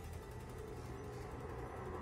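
Faint, unsettling horror-film score, a low sustained drone with a few held tones, slowly swelling in level.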